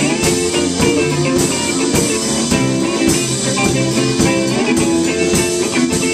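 Live band playing an instrumental passage: electric guitars over a drum kit keeping a steady beat, with regular cymbal hits.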